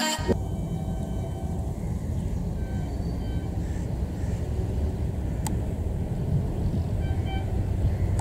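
HGMU-30 diesel-electric locomotive approaching at speed: a steady low rumble of its engine and the running train, growing slightly louder near the end.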